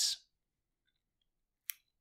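Silence in a pause between sentences of a man's speech, broken near the end by a single short mouth click, a wet smack of the lips and tongue, just before he speaks again.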